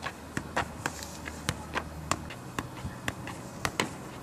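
A football being juggled on the feet: a run of sharp taps, about three or four a second, each one a touch of the ball on the shoe. A low steady hum runs underneath and stops about halfway through.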